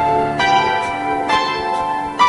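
Piano playing slow chords in an instrumental break of a song, a new chord struck about once a second and each left ringing.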